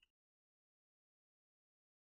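Near silence: the sound track drops to nothing.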